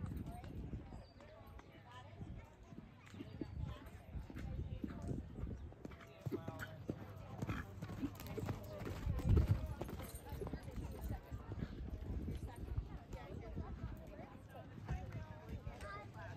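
Hoofbeats of a palomino horse cantering on arena sand: a run of soft, repeated thuds. Voices talk at the same time, and there is a heavy low thump about nine seconds in.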